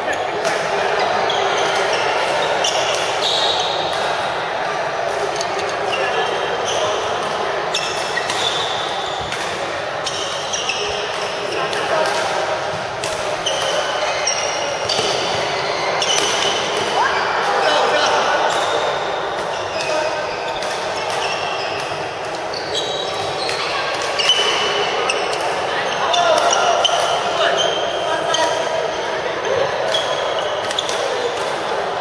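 Badminton rackets striking a shuttlecock in a doubles rally, a run of sharp clicks at irregular intervals, with short shoe squeaks on the court surface, echoing in a large hall.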